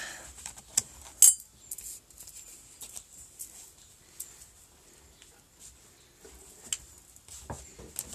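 Light handling clatter: scattered sharp clicks and knocks of small hard objects being picked up and moved, the loudest about a second in.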